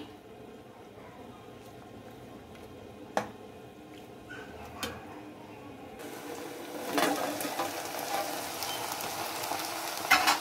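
A pot of spaghetti boiling with a low, steady bubbling and a couple of light clicks. About six seconds in the sound changes to minced meat frying in a metal pan, the sizzling growing louder after a clatter about seven seconds in as the pan's lid comes off.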